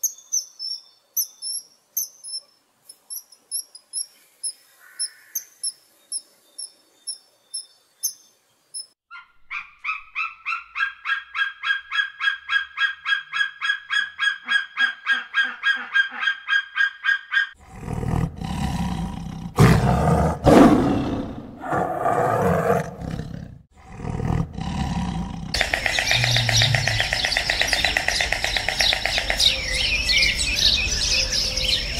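A string of different animal calls cut one after another. First come high, thin chirps about twice a second, then a fast, even run of calls about four a second, then a loud, harsh, noisy stretch, and from near the end a dense, steady chorus of bird calls.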